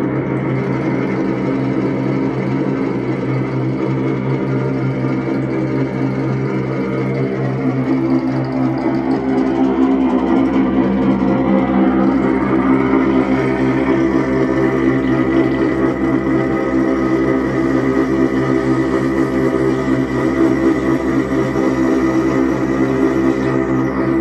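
Experimental electronic drone music from a chain of effects pedals played through a small amplifier: a dense, unbroken stack of held tones. It swells a little louder and brighter about eight seconds in.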